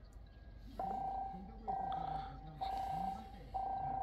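Electronic railway warning alarm sounding a steady single-pitched tone four times, about once a second, as a freight train approaches.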